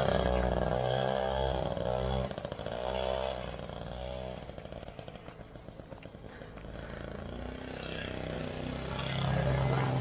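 Small two-stroke Honda moped engine, revved as it pulls away, fading as it rides off, then growing louder again as it comes back. It is running on two-year-old fuel.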